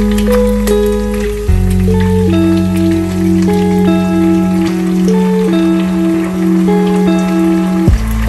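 Background music: a soft tune of held notes stepping slowly from one pitch to the next over a steady low note.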